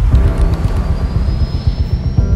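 Engine of a speeding uncrewed sea-drone boat running, with a thin high whine rising slowly in pitch.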